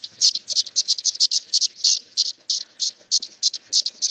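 A recorded calling song of male periodical cicadas (Magicicada septendecim), played back over a video call. It is a rapid run of high-pitched buzzing pulses, about six a second.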